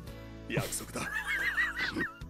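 A man's high-pitched, wavering laugh starting about halfway through, over steady background music.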